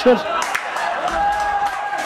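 A voice calls out in one long held note for almost a second, a little past a second in. Under it is the open sound of a football pitch with a few faint knocks.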